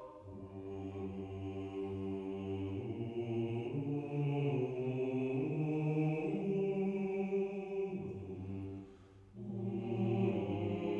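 Mixed choir singing slow, sustained chords, with the low men's voices prominent. The sound breaks off briefly near the end, then the voices come back in.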